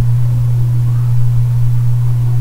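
A steady low hum that holds one pitch throughout, the kind of electrical hum carried on a recording line.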